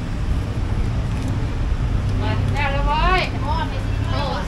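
Street background with a steady low rumble of traffic. A high-pitched voice speaks briefly from about two seconds in.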